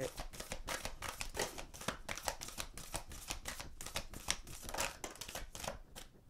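A deck of tarot cards being shuffled by hand: a quick, irregular run of light card-on-card clicks and slaps.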